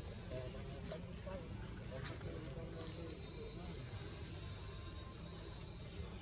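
Faint, indistinct human voices talking in the background, over a steady high-pitched drone.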